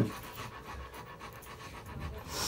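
Rottweiler panting steadily through an open mouth inside a basket muzzle.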